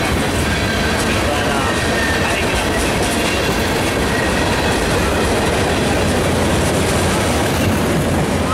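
Freight train's tank cars and covered hoppers rolling past at speed: a steady rumble of steel wheels on rail with clickety-clack over the joints, and a faint high wheel squeal now and then.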